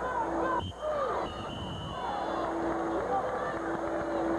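Spectators in a gym crowd shouting and calling out during a wrestling match, with many voices overlapping.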